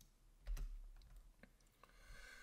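A few faint, separate computer keyboard keystrokes, as a line of formula code is broken and indented.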